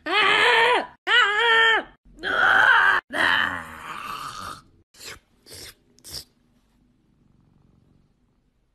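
A person's voice making a drawn-out groaning yawn sound several times in a row, each rising then falling in pitch, the last one longer and fading out, mimicking a cat's yawn. About five seconds in come three short, sharp sounds, then near silence.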